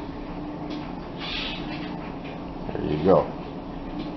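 Hands tossing and patting small fish pieces in dry flour on a glass plate: soft rustling and dabbing over a steady hum, with one short spoken word near the end.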